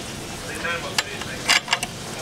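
A long-reach lighter clicking as the burner under a metal cheese-warmer stand is lit: a sharp click about halfway through and a quick run of clicks near the end, over a faint steady hiss.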